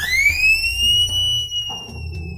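A high whistle-like tone that glides steeply upward, then holds and slowly sinks and fades.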